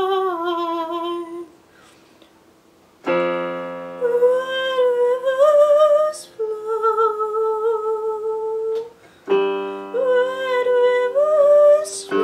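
Solo song on an electric piano with a woman's voice. A held, vibrato-laden vocal note fades out, and after a short pause a sustained keyboard chord is struck about three seconds in. The voice carries a slow melody over it, and a fresh chord comes in near nine seconds.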